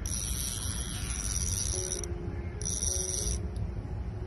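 Centrepin reel's check buzzing as a hooked tench takes line: two spells of a steady high buzz, the first about two seconds long, the second shorter, each starting and stopping abruptly.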